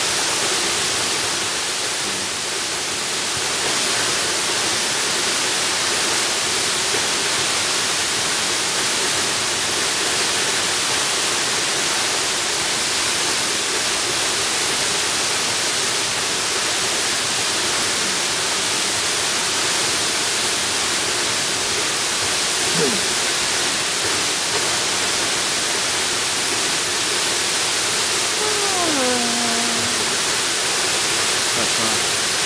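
Tall waterfall falling steadily: a constant, even rush of water. Near the end a short sound falling in pitch cuts across it.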